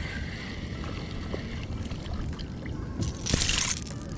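A hooked largemouth bass splashing as it is hauled from the water to the kayak: a short burst of splashing about three seconds in, over a low rumble of wind on the microphone.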